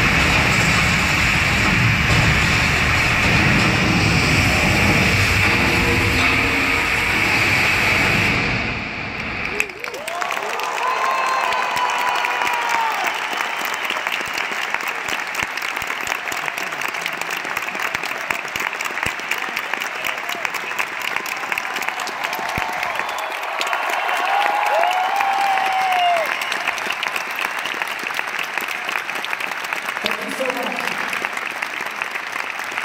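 Loud live concert music that stops abruptly about ten seconds in, then a large arena crowd applauding and cheering, with high whoops rising and falling over the clapping.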